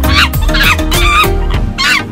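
Monkey calls, a quick series of high shrieks, each sliding down in pitch, about two or three a second, over background music.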